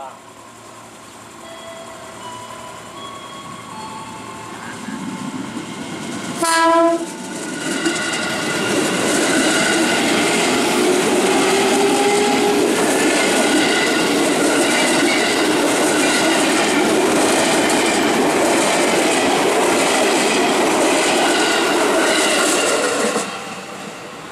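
JR 205 series electric commuter train (KRL) gives one short horn blast about six and a half seconds in as it draws near, then passes close by: a loud, steady rush of wheels on rails with whining tones over it. The sound cuts off abruptly about a second before the end.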